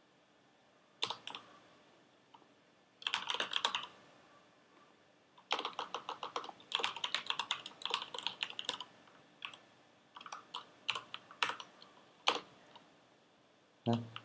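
Typing on a computer keyboard: bursts of quick keystrokes separated by short pauses, starting about a second in.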